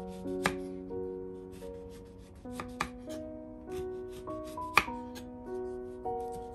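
Kitchen knife slicing through a lemon and tapping against a wooden cutting board, three sharp taps with the loudest about three-quarters of the way through. Soft piano music plays underneath.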